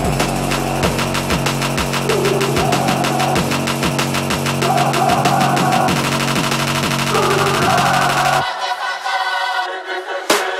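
Instrumental electronic trap music: rapid drum hits over a held bass line. About eight and a half seconds in, the bass drops out, leaving a thinner passage.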